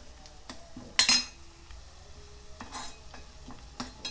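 A steel spoon scrapes and knocks against a non-stick pot as chopped onions and green chillies are stirred in hot oil, with a faint sizzle underneath. The clinks come every second or so, the loudest about a second in. The onions are being sautéed until they turn golden-red.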